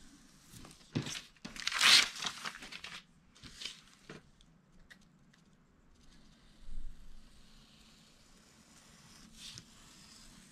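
A finger blade slicing through wrapping paper along the edge of a poster board, the paper scraping and tearing as the excess strip comes away. The cut is loudest about two seconds in, with a few softer paper scrapes and rustles after it.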